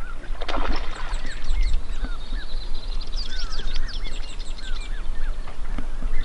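Several small birds chirping and calling over and over, quick rising and falling notes and high trills overlapping, over a steady low rumble.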